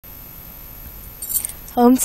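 Bangles on a woman's wrists jangle briefly about a second and a half in as she brings her hands together. A woman's voice then starts 'Om' near the end, over a faint steady hiss.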